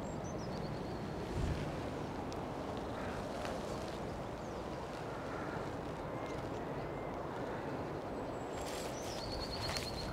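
Outdoor ambience of steady wind noise, with a songbird singing a short falling trill near the start and again a rapid trill near the end. A single low thump comes about a second and a half in, and a few light clicks, like footsteps in grass, come near the end.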